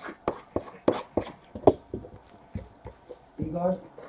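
Hands handling a sealed cardboard trading-card box, picking it up and working at it: a quick run of sharp taps and clicks, with a short voice near the end.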